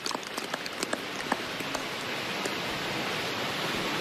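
Golf gallery applauding a holed putt. Separate claps at first merge into steady, slightly swelling applause.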